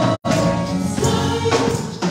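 Two women's voices singing a gospel praise song into microphones over electric keyboard accompaniment. The sound cuts out completely for an instant just after the start.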